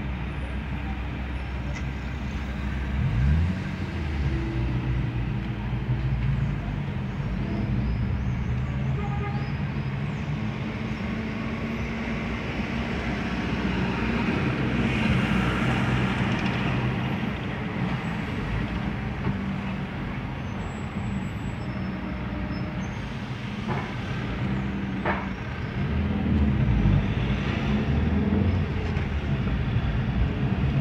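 Fiat Siena's engine and road noise heard from inside the cabin while driving in city traffic, the engine pitch rising about three seconds in as the car pulls away. A bus passes close alongside around the middle, briefly swelling the noise, and two short clicks come later.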